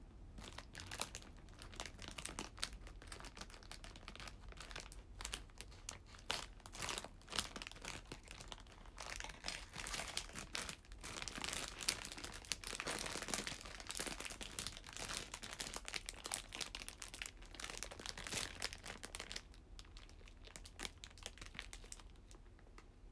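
Plastic snack wrapper crinkling as it is handled and pulled open, in dense, irregular crackles that ease off near the end.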